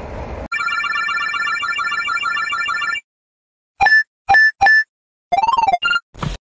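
Edited sound effects: a trilling telephone-style ring of rapidly pulsing tones for about two and a half seconds. After a short gap come three short loud beeps, then a brief tone that rises and falls in pitch.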